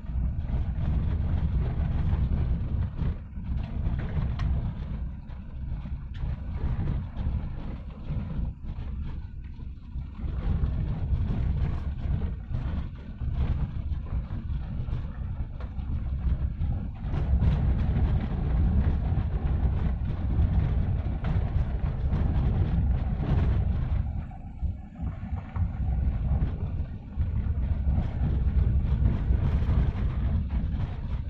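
Car cabin noise while driving on a rough unpaved gravel road: a steady low rumble of tyres and engine, with frequent small knocks and rattles as the car rides over stones.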